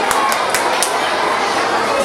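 Audience applauding and cheering, with a few sharp claps standing out in the first second and crowd chatter underneath.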